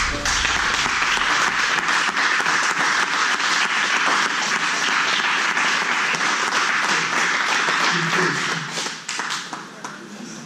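Small crowd of spectators applauding, steady clapping with voices mixed in, dying away about nine seconds in. The applause marks the end of the match by submission.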